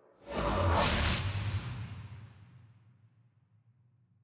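A loud transition whoosh sound effect with a deep rumble underneath. It starts suddenly a moment in and dies away over about two seconds, over the last faint tail of a fading electronic outro.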